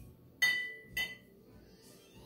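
A metal jigger clinking twice against the rim of a glass mixing glass, about half a second apart, as it is emptied. The first clink is the louder, and each rings briefly.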